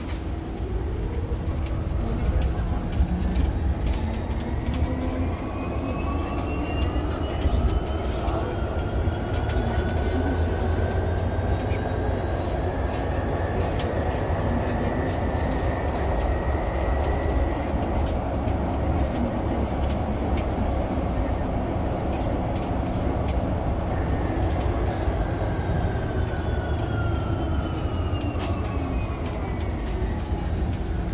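Mercedes-Benz eCitaro G articulated electric bus heard from inside while driving: the electric drive whine rises in pitch as the bus gathers speed over roughly the first half, then falls over the last few seconds as it slows. A steady low road and tyre rumble runs underneath, with a steady hum and small rattles.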